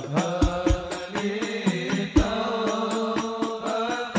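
Hadrah ensemble: male voices chanting a devotional song over a steady beat of rebana frame drums, with deep low drum strokes every so often.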